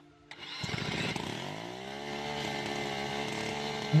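Handheld electric angle grinder starting up and being pressed against a tractor engine's pulley to crank it over. Its pitch falls over the first couple of seconds as it takes the load, then it runs at a steady pitch.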